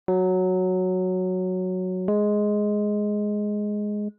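Two sustained keyboard notes played one after the other as an ear-training interval, each held about two seconds and fading slowly: the second note is a little higher than the first and stops abruptly.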